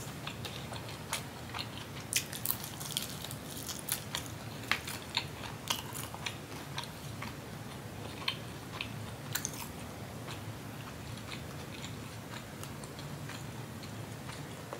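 Close-miked mouth sounds of a person chewing a mouthful of soft food: a run of small wet clicks, thickest in the first half and thinning out towards the end, over a steady low hum.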